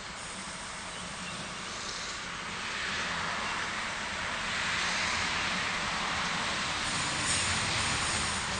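Double-deck electric passenger train approaching along the platform. The noise of its wheels on the rails and its running gear grows steadily louder as it nears.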